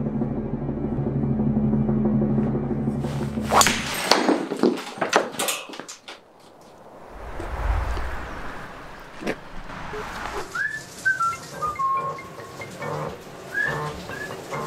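A low steady musical drone, then a cluster of sharp cracks and crashes about four seconds in, then a low rumble and a few descending whistle-like notes near the end.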